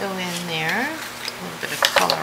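A woman humming a wordless tune in long held notes that slide upward in pitch, with a couple of sharp clicks as small pigment jars are handled.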